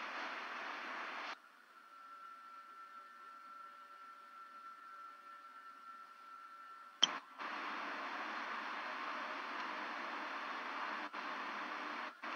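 Steady hiss of an open audio line with no programme sound coming through, because the video presentation's audio is off. About a second in the hiss drops away to a fainter stretch with a few thin steady tones, then a click about seven seconds in and the hiss returns.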